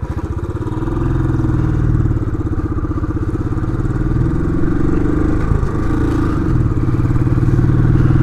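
Royal Enfield Classic 500's single-cylinder engine pulling away from a standstill and accelerating uphill, with an even beat of exhaust pulses. Its note changes around the middle as it shifts up, then it pulls steadily in second gear.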